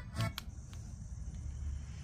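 Bose Wave radio/CD (AWRCC1) CD drive seeking between tracks: a short sound near the start, then a steady high-pitched whine for about a second and a half over a low hum.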